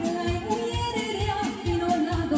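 Live folk dance music from a band: a woman singing over a fast, steady beat of about four drum hits a second.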